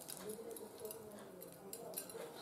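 Quiet room tone with faint, indistinct background sound and a few light clicks near the end.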